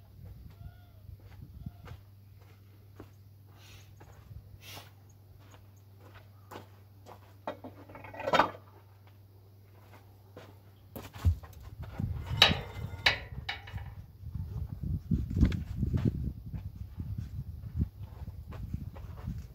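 Animal calls from livestock or fowl: a few short calls early on, a loud one about eight seconds in and another run of calls about twelve seconds in. From about eleven seconds, footsteps on dirt and low thuds as a person walks up.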